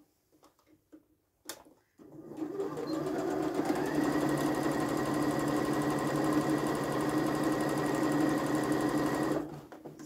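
Domestic electric sewing machine stitching a seam through cotton toile fabric. After a few faint clicks it starts about two seconds in, speeds up to a steady, fast whir and stops shortly before the end.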